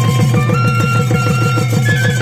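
Bamboo transverse flute playing a folk melody of long held notes that step upward in pitch, over a fast, steady drumbeat accompanying a Mising Gumrag dance.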